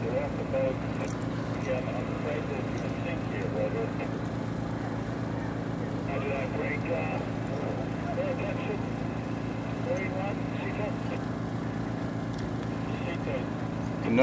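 A steady, low engine drone with an even pulse, like a motor idling nearby, with faint voices in the background.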